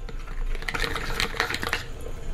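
A metal fork whisking onion cream powder into cold water in a small plastic bowl, a quick irregular run of light ticks and taps against the bowl, busiest in the middle. The powder is being dissolved so it does not form lumps.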